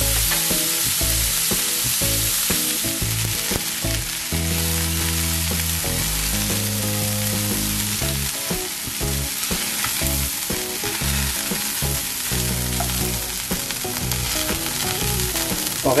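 Chicken pieces searing in hot oil in a cast-iron skillet: a steady sizzle as the skin browns.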